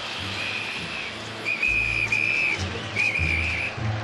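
A whistle blown in several short, high blasts, some in quick pairs, over a steady low rumble and background noise.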